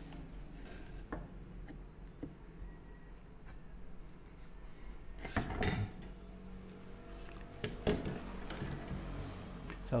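Scattered knocks and clinks of bar clamps and tools being handled on a wooden workbench, the loudest a brief clatter about five seconds in, over a steady low hum.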